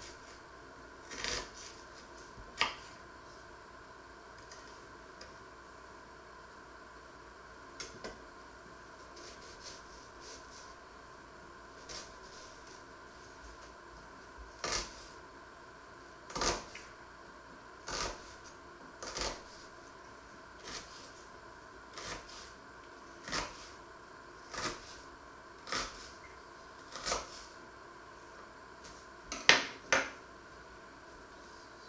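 A small kitchen knife dicing an onion on a wooden chopping board: single knocks of the blade on the wood, a few scattered ones at first, then about one every second and a half from halfway on.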